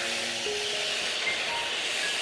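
Handheld butane torch burning with a steady hiss, under slow background music of single held notes.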